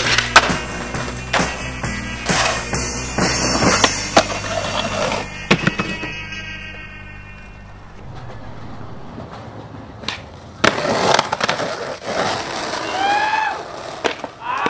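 Skateboarding: wheels rolling on concrete and asphalt with sharp board slaps, pops and landings, and a board grinding on a metal handrail early on, over music with a steady bass line that stops about six seconds in. After a quieter stretch the board sounds pick up again, with a couple of short shouts near the end.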